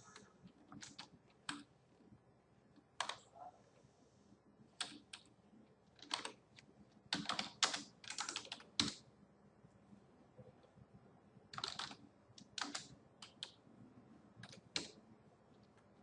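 Faint computer keyboard keystrokes at an irregular pace, single presses and short quick runs, the busiest run about seven to nine seconds in.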